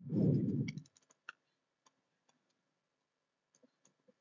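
A brief low rumble in the first second, then a scattering of faint clicks and taps from a stylus on a tablet screen as brackets are written, one sharper click a little over a second in.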